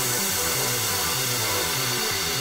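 Electronic background music in a quieter passage: short low bass notes stepping in a regular repeating pattern under a steady hiss.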